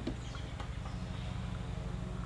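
A steady low mechanical hum, with a faint click about half a second in.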